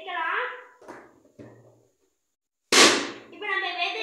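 A rubber balloon bursting with a single sharp bang about two-thirds of the way in, after two small clicks of handling.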